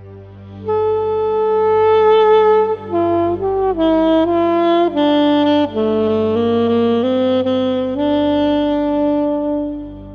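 A Flatsax, a homemade plywood-and-pine saxophone with a soprano sax mouthpiece, pitched in F, playing a slow improvised melody over a low steady drone. It comes in with a long held note about a second in, moves through a phrase of shorter notes that step down and back up, then settles on another long held note that fades near the end.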